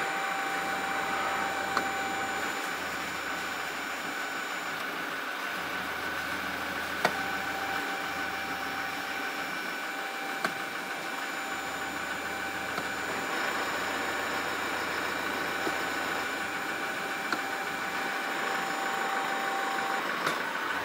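Toyota Hilux 2.8-litre turbo diesel idling steadily, heard from inside the cab while the automatic is shifted slowly through the gears to circulate freshly filled transmission fluid; the low hum changes a few times as gears engage. A few light clicks.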